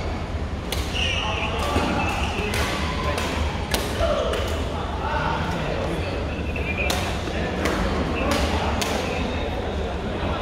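Badminton rackets striking shuttlecocks, sharp irregular smacks every second or so from several courts at once, over the background chatter of players in the hall.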